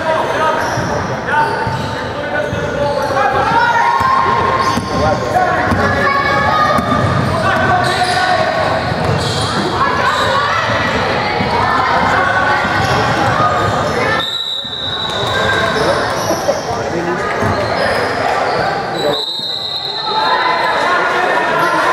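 Basketball game in a gym: a ball bouncing on a hardwood court under a steady mix of players' and spectators' voices. A referee's whistle blows in two short blasts, about 14 seconds in and again near the end, stopping play.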